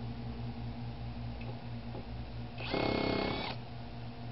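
Cordless impact driver on a stripped lug nut, fitted with a socket adapter and extension, running one short hammering burst of under a second about three seconds in, with its motor whining over the rapid impacts.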